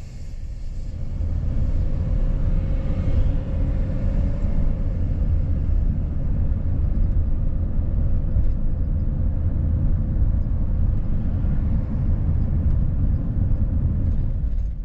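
Low, steady road and engine rumble heard from inside a moving vehicle driving along a town street, swelling over the first couple of seconds and then holding steady.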